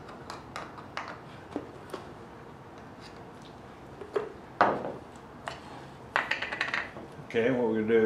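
Lid of a small metal stain can being pried open: scattered sharp metallic clicks and taps as it is worked loose, the loudest about four and a half seconds in, then a quick run of clicks a little after six seconds.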